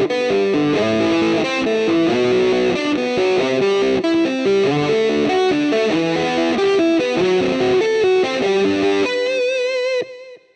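Distorted high-gain electric guitar playing a hybrid-picked arpeggio exercise. The pick takes the low E string and the fingers pluck the A, D and G strings, walking note by note through the chords of G major in a steady repeating pattern. It ends about nine seconds in on one held note with vibrato.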